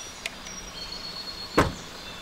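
A car door on a Mahindra XUV500 SUV shutting: one short, dull thump about one and a half seconds in, over a steady outdoor hiss.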